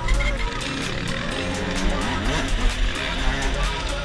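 Music playing over a dirt bike engine revving, its pitch rising and falling through the middle.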